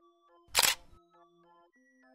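Cartoon camera-shutter sound effect: one sharp click-and-flash noise about half a second in, loud over light background music.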